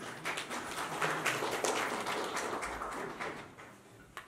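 Audience applause: many hands clapping, swelling about a second in and dying away before the end.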